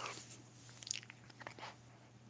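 Faint breathy puffs and small mouth clicks as air is blown into hands cupped against the mouth, an attempt at a hand-blown sound trick that fails: no clear tone forms. A steady low electrical hum runs underneath.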